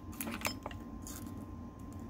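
Faint light clicks, a few in the first second, from pressing the buttons of a RigExpert AA-600 antenna analyzer to start an SWR measurement, over a low steady hum.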